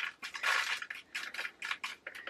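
A strip of small plastic storage containers for diamond-painting drills clicking and clattering as they are handled, with a few short rustles.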